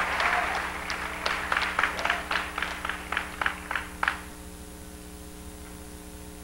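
A church audience's applause dying away: dense clapping thins to a few separate claps, which stop about four seconds in. A steady electrical hum remains.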